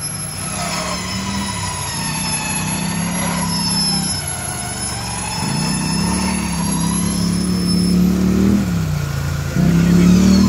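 Smittybilt X2O electric winch whining under load, its pitch wavering as the pull varies. Under it a vehicle engine runs, its revs rising and falling.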